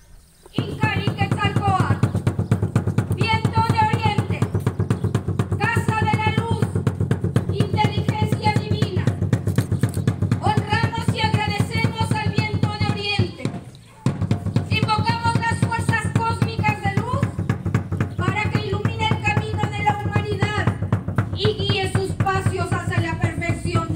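Fast, continuous drum roll on an upright wooden ceremonial drum, with a high wavering melody over it in short phrases. The drumming stops briefly a little past halfway, then starts again.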